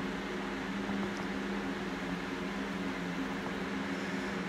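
Steady low hum and faint hiss of a running fan-type machine, unchanging throughout.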